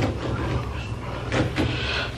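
Low rumble of a handheld camera being carried, with a few faint footsteps on a staircase.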